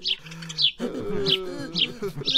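Background birdsong: small birds chirping in short, high, repeated notes a few times a second.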